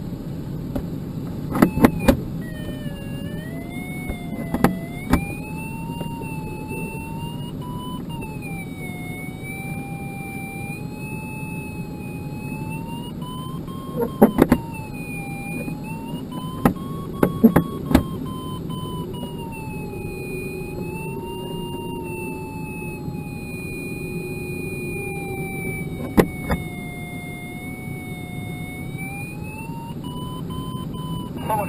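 Inside a sailplane's cockpit in flight: a steady rush of airflow, with an electronic variometer tone that wavers slowly up and down in pitch as the glider meets rising and sinking air. A few short clicks break in now and then.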